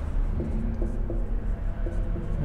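Marker pen writing on a whiteboard, over a steady low hum.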